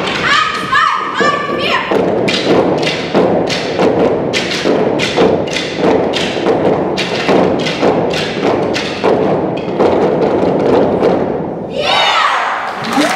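Long wooden sticks struck in rhythm by a stick-percussion ensemble: a steady run of hard wooden knocks, about three a second, with a few short sung or shouted calls in the first two seconds.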